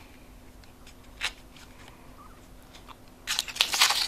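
Aluminium-foil spouted pouch crinkling and rustling as it is handled: a brief crinkle about a second in, then a louder run of crinkling near the end.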